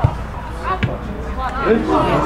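A football being kicked: a sharp thud right at the start and a second one just before a second in, among shouting voices from the pitch.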